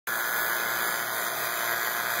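Robinair VacuMaster 5 CFM two-stage vacuum pump running with a steady, even hiss. It is evacuating an air-conditioning system, pulling out moisture and non-condensables.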